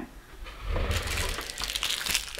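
A low thump, then a second or so of rustling and scraping: handling noise from a person shifting at a table and moving things on it.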